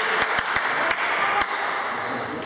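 A table tennis ball taps about four times at uneven intervals, light sharp clicks on the table and bat between points, over a steady background hiss of the hall.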